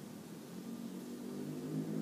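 Steady room noise with a faint hiss, and a faint low hum that builds gently in the second half.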